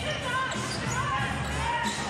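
Basketball game in play on a hardwood court: the ball dribbling, with short sneaker squeaks over arena crowd noise.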